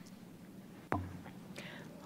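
Quiet room tone, then about a second in a woman says a single word, "Well," into a microphone.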